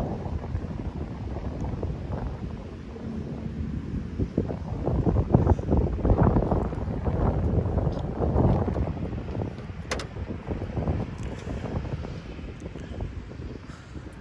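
Wind buffeting the microphone in uneven gusts, swelling in the middle and easing off toward the end, with one sharp click about ten seconds in.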